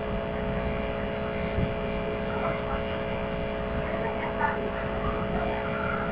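Steady electrical hum with several tones, over a background hiss, with a few faint brief sounds.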